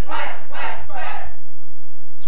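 Congregation shouting in response to the preacher's declaration: three loud bursts of many voices in the first second or so, then dying down.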